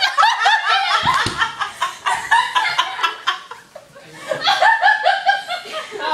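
People laughing hard in rapid, repeated bursts, in two spells with a brief lull a little past the middle.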